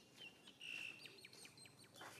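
Faint high-pitched animal calls: a few short whistle-like notes, one held briefly about half a second in, then a quick run of chirps.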